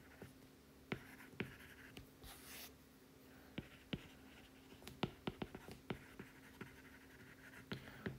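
Stylus tip tapping and scratching on an iPad's glass screen as words are handwritten: faint, irregular sharp ticks, with a quick run of them about five seconds in.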